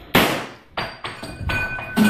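A single sharp bang from a revolver fired overhead, ringing off briefly, followed by a few lighter knocks and clatters.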